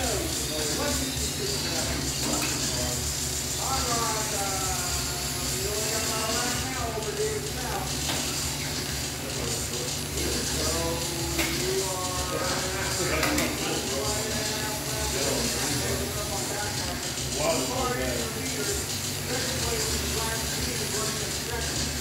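Small electric RC race cars running laps on a concrete oval: a high motor whine and hiss throughout. Voices talk in the background over a steady low hum.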